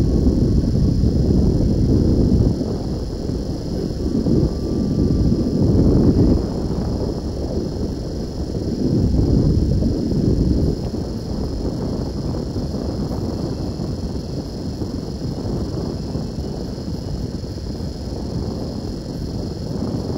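Low, uneven rumble of road traffic heard from a car waiting in traffic, with wind buffeting the microphone; it swells twice in the first half.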